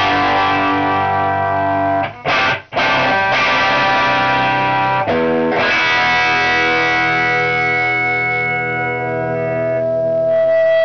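Electric guitar (Epiphone Les Paul Ultra with Granville humbuckers) played through a 1974 Marshall Super Bass valve head modded to Super Lead specs, channels jumpered, treble nearly off, into a Marshall 4x12 cabinet. Chords are struck and let ring, briefly choked twice about two seconds in, and a new chord about five seconds in is held ringing to the end.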